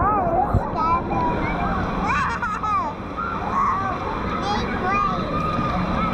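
Choppy lazy-river water sloshing and splashing right at the microphone, which sits at the water's surface, with children's voices calling throughout.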